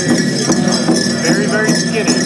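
Powwow drum struck in a steady beat, about two and a half strokes a second, under high-pitched group singing, with dancers' bells jingling.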